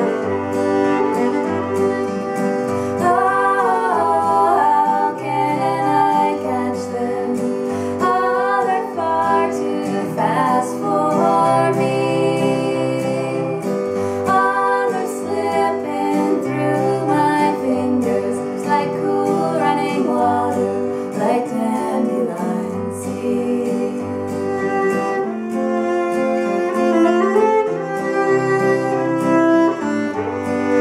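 Live acoustic folk music: a fiddle and an acoustic guitar playing together, with a woman's voice singing over the guitar in a stretch where the fiddle rests.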